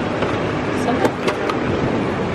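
Steady street and traffic noise with a few sharp clicks about a second in as a van's side door latch is worked and the door opened.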